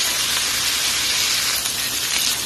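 Ground pork, onion and garlic frying in oil in a pan: a steady sizzle.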